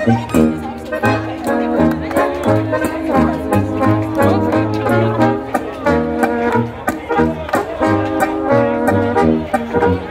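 Bavarian folk dance band playing live: button accordion, guitar, tuba and trumpets together, the tuba keeping a steady bass beat under the accordion and brass melody.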